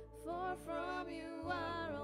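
Live worship music: a voice sings a drawn-out line with wavering pitch over sustained keyboard chords and acoustic guitar.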